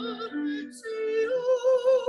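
A woman singing a Hebrew prayer in a sustained chant with wide vibrato on held notes. She takes a quick breath about three-quarters of a second in, then holds a long note.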